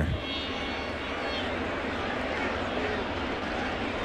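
Steady ballpark crowd noise carried on the game's radio broadcast, an even hubbub with no single loud event.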